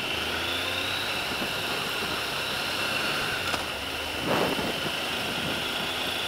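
A motorcycle running at a steady road speed, heard from the rider's helmet, with wind rushing over the microphone. A high whine rises a little in the first second, and a short louder rush of noise comes about four seconds in.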